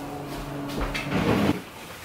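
Handling noise from an open soft-sided suitcase and clothes being moved in it, with a few light knocks and rustles loudest about a second in, over a steady low hum.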